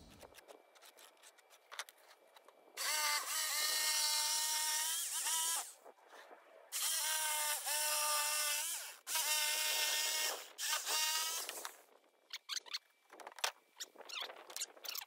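Corded electric jigsaw cutting OSB in three runs of about two to three seconds each. Its motor whines at a steady pitch during each cut and glides up and down as it starts and stops. Near the end come a few clicks and knocks as the saw and cut piece are handled.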